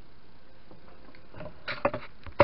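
Quiet room tone, then near the end a few short clicks and rustles of hands handling small objects over a plastic bowl.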